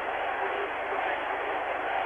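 Steady, even murmur of a large crowd of spectators around a speed skating rink, with no single loud event standing out.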